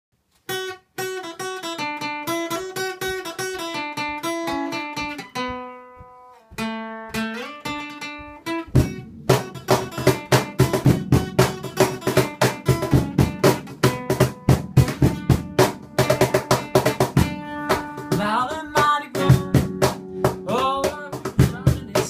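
Acoustic guitar picking a melody, with a brief pause about six seconds in. About nine seconds in a hand-played cajon joins with a steady beat of strikes, and the guitar plays on.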